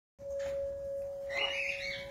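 A parrot call, one drawn-out pitched cry starting about two-thirds of the way in, over a steady, even tone that runs throughout.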